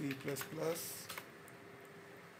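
A few clicks of computer keyboard keys typing a short search term, ending about a second and a half in.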